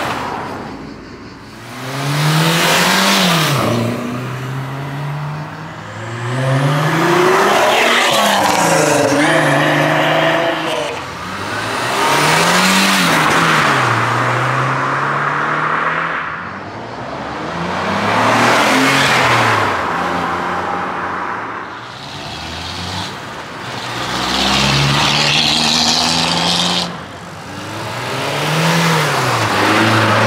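Renault Sport cars, among them a Mégane 3 RS and a Renault 5 Turbo, accelerating hard away one after another, about six passes in all. In each, the engine note climbs and falls back at each upshift before rising again.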